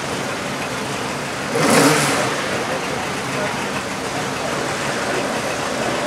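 Subaru Impreza WRC rally car's turbocharged flat-four engine heard at a distance, revving as the car drives the course. About a second and a half in there is a brief, louder rush lasting about half a second.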